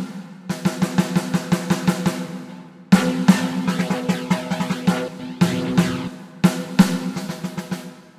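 Roland TD-17 electronic drum module's snare sound played in several bursts of rapid hits, heard through its multi-effects as the effect type is switched from chorus to overdrive-chorus to phaser, with a steady ringing pitch under the strikes.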